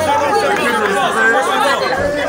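Crowd chatter: many voices talking and calling over one another at close range, with no pause.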